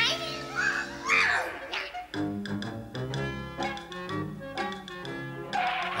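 Cartoon orchestral underscore music moving through changing notes. During the first two seconds a cartoon cat yowls a few times over it.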